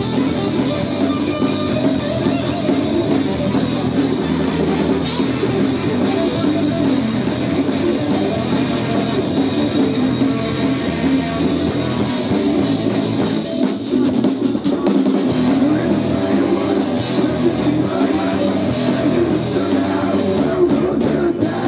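Live rock band playing loudly and without a break: electric guitars, bass guitar and drum kit.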